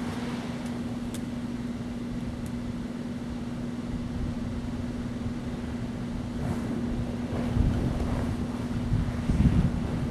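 A steady low mechanical hum with wind rumbling on the microphone; the rumble grows gustier in the second half.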